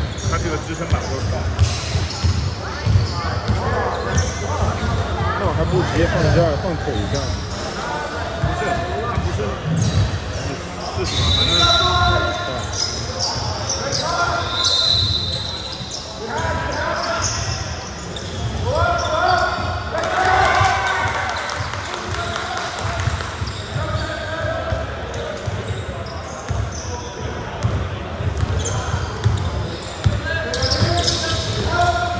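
Basketball bouncing on a hardwood gym floor during live play, repeated dribbles echoing in a large hall, with players calling out to one another.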